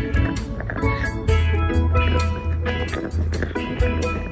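Upbeat background music with a steady beat and a strong bass line.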